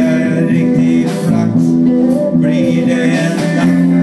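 Live band playing: electric guitar, bass, drums and keyboard.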